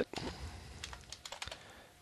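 Computer keyboard typing: quiet, uneven keystrokes as a short command is typed into a console.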